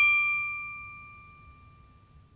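A bell-like ding ringing out in a few clear tones and fading steadily away, a sound-effect sting for a logo reveal. A faint low rumble sits underneath.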